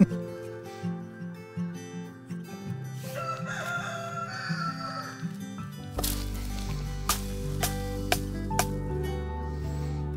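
A rooster crowing once, a wavering call about three seconds in, over background music. From about six seconds in there is a low hum and a few sharp knocks.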